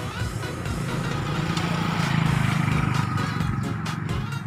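A motor vehicle engine passing, a low hum that grows louder toward the middle and then fades, over background music.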